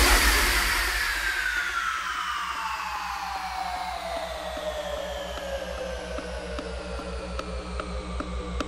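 A hard house DJ mix in a breakdown. A hissing sweep and high tones glide slowly downward and fade out over a steady, fast-pulsing bass, and light percussion ticks come back in near the end.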